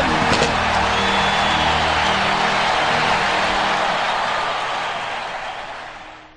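Stadium crowd cheering and roaring after a touchdown, over a steady music bed, fading out near the end.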